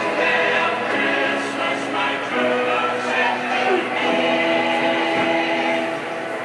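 Music with a choir singing long held notes, the chords changing about once a second.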